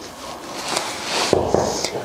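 Leather knee-high boot being pulled on: a rustling, scraping rub of leather that swells over the second half, with a few short knocks near the end.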